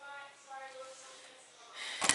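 Faint breath sounds, with a quiet, higher-pitched voice in the background, mostly in the first second.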